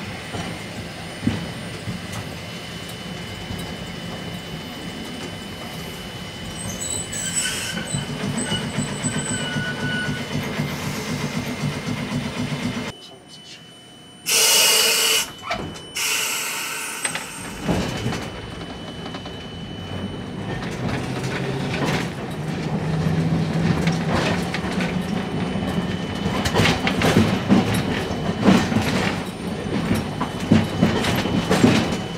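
Electric streetcar running, heard from the driver's cab: a steady low motor and running hum with wheel noise on the rails, and a brief loud hiss about halfway through. Near the end the wheels clatter over rail joints and points in quick irregular clicks.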